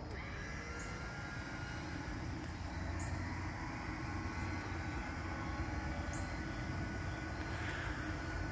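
Steady low background rumble outdoors, with three faint, short high chirps spaced a couple of seconds apart.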